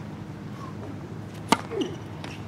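A single sharp pop of a tennis ball, about one and a half seconds in.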